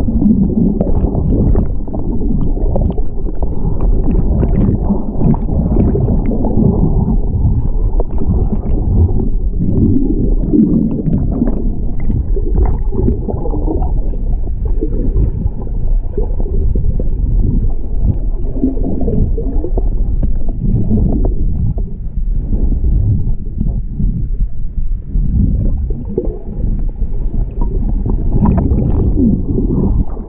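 Swollen river current after a flash flood heard with the microphone underwater: a loud, muffled low rumble of rushing water with gurgling and scattered small clicks of bubbles or debris.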